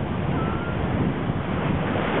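Ocean surf rushing and foaming in shallow water, a steady wash of noise with wind buffeting the microphone underneath.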